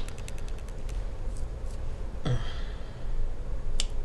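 Handling noises at a MacBook Pro: a quick run of light clicks at first, a breath-like rush about two seconds in, and one sharp click near the end, over a low steady hum.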